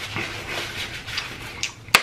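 Close-miked mouth sounds of someone chewing a mouthful of soft French fries with chili, with small wet clicks, ending in one sharp click just before speech resumes.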